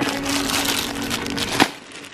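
Wire shopping trolley rattling as it is pushed along, a dense clattering noise, ending in one sharp knock about one and a half seconds in.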